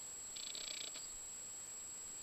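Quiet countryside background with a faint steady high whine and a brief high-pitched buzzing trill about half a second in.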